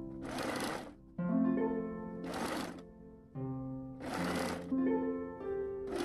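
Domestic sewing machine stitching in short bursts, each under a second and about two seconds apart, four times, the last just starting at the end. Plucked-string background music plays under it.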